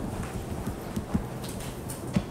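Handling noise from a handheld microphone: irregular knocks and bumps over a low rumble, the typical sound of a mic being passed between audience members.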